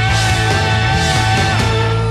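Rock band playing loud live music, with long held notes that step down in pitch about three quarters of the way through.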